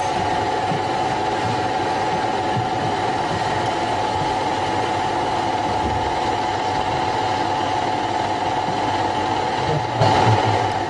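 A steady, machine-like hum with a constant mid-pitched tone over a whirring hiss, unchanging throughout.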